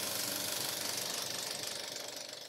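Film projector running: a rapid, steady mechanical clatter that begins to fade near the end.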